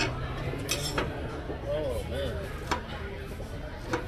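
Knife and fork clinking against a plate while cutting crispy croissant French toast: about five short sharp clicks spread over a few seconds, over the murmur of voices in a busy cafe.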